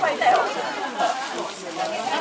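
Crowd chatter: several people talking at once, with overlapping voices.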